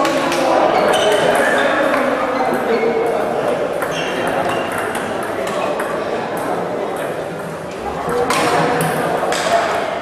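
Table tennis balls ticking sharply and often off tables and bats around the hall, some with a short ringing ping, over steady chatter of voices.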